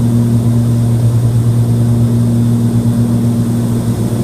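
Steady drone of a Cessna 340's twin piston engines and propellers in flight, heard inside the cockpit: a loud, unchanging low hum with a constant pitch.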